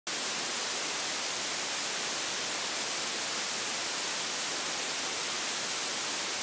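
Steady static hiss, flat and unchanging and brighter in the highs; it starts abruptly at the very beginning.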